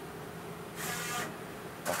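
Milara TouchPrint Essentials SMT stencil printer running a dry cycle: a steady machine hum, with a brief hiss about a second in.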